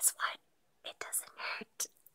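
A woman whispering a few short, breathy words.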